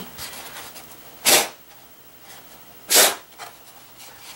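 Two short, forceful puffs of breath blown by mouth straight onto wet watercolour paint, without a straw, to push it out into streaks. The puffs come about a second and a half apart.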